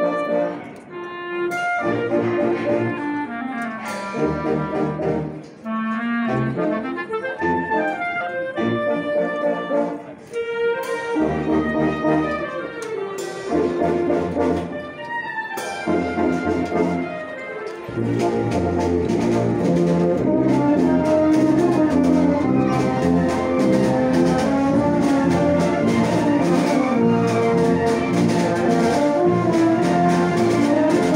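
Italian town wind band (banda) playing a march on clarinets and brass, with sousaphones on the bass line. The first part is lighter, with brief pauses between phrases. About eighteen seconds in the full band comes in, louder and steadier.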